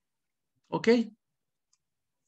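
Only speech: a man's voice says one short word, "Ok", about a second in, with silence around it.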